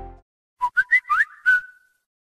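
A short electronic notification jingle: five quick chirping notes, the last one held briefly, after the music bed cuts off.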